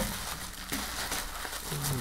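Soft, low crinkling of a clear plastic bag being handled as cards are worked out of it.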